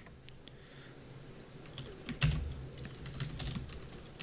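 Computer keyboard keystrokes: scattered taps, with a quicker run of keys about two seconds in.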